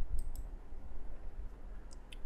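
Computer mouse clicks stopping a running capture: a quick pair of short clicks, then one more near the end.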